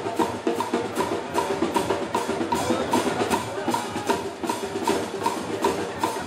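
Street marching drum band, with bass drums and sharp percussion strokes, playing a steady fast beat of about two and a half strokes a second. Pitched notes are held over the beat.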